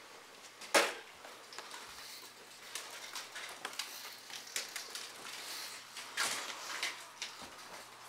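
Footsteps and scuffs of someone walking over a littered floor, with a sharp knock about a second in and a few louder steps around six seconds, over a faint steady hum and hiss.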